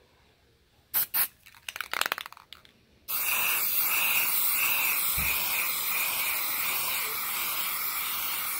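Aerosol spray paint can: a couple of sharp clicks and a short rattle about a second in, then a steady hiss of paint spraying starts suddenly about three seconds in, laying on a second coat of yellow.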